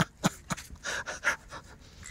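A large wels catfish held up out of the water by its lower jaw gives a few short clicking pops, then a couple of breathy puffs.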